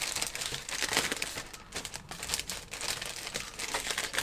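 Clear polythene kit bag crinkling irregularly as hands handle and open it to get the clear plastic parts out.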